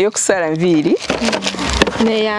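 A woman's voice exclaiming in a sliding, up-and-down pitch, then about a second of light clicks and rustling as a boxed electric hair clipper is handled and opened.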